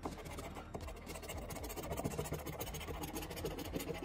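A scratcher tool being rubbed in quick scraping strokes across a scratch-off lottery ticket, wearing off the coating.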